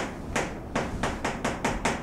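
Chalk writing on a chalkboard: a quick run of short, sharp chalk taps and scrapes, about four or five strokes a second.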